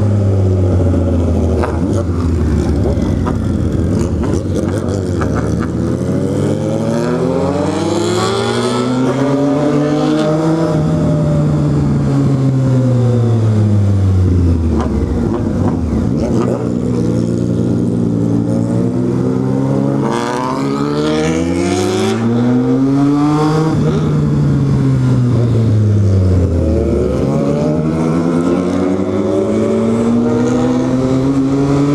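Motorcycle engine under way, its revs climbing and falling in long sweeps as the bike accelerates and eases off, dropping low about halfway through and again near the end, over steady wind rush.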